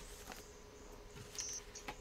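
Quiet room tone with a faint steady hum, a few light clicks, and a brief faint high hiss about one and a half seconds in.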